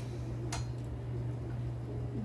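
A steady low hum with a single sharp click about half a second in.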